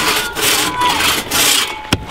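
Two-man crosscut saw cutting through a log in rhythmic push-pull strokes, about two a second. Near the end comes a sharp knock as the cut-off round drops away.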